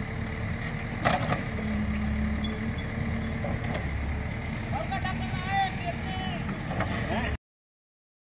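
Diesel engine of a backhoe loader running steadily as it pushes soil with its front bucket, with voices calling out about five seconds in; the sound cuts off abruptly near the end.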